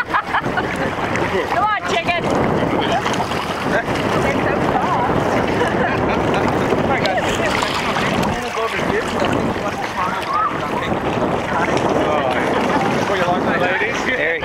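Wind buffeting the microphone over shallow sea water sloshing and lapping, a steady loud rushing, with voices now and then in the background.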